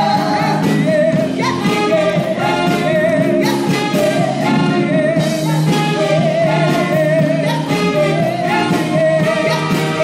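A gospel worship song performed live: a lead voice holding long notes with a wide vibrato over steady instrumental accompaniment.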